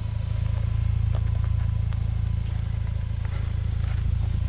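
2019 Ford Ranger pickup's engine running steadily at low revs as the truck creeps down a rocky trail, with a few light knocks of loose rock under the tyres.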